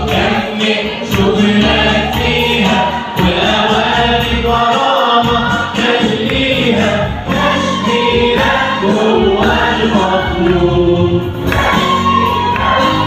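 Mixed choir of men and women singing an Arabic Christian hymn, continuously and loudly.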